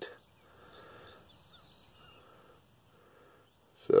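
Quiet open-air background with a few faint, distant bird chirps.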